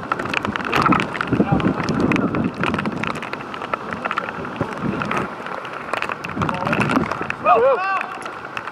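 Five-a-side football players calling out to each other across an outdoor pitch, with a loud shout near the end. Short sharp knocks of ball and boots are scattered throughout.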